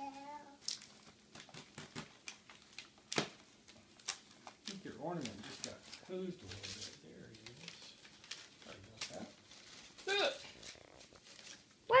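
Gift-bag tissue paper crinkling and rustling in short, scattered crackles as a toddler pulls it out of the bag.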